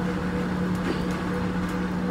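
Steady low hum, with a few faint ticks from a plastic fork and spoon working in a plastic food container.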